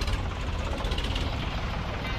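A tractor engine idling: a low, steady rumble.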